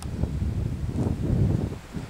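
Wind buffeting the microphone, a low rumble that rises and falls.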